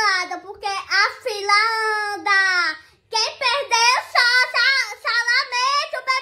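A young girl singing in a high voice, holding long wavering notes in short phrases, with a brief pause about three seconds in.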